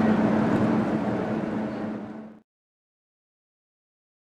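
Metro train and station platform noise: a steady low hum over a rushing wash. It fades out over about two and a half seconds and then stops dead.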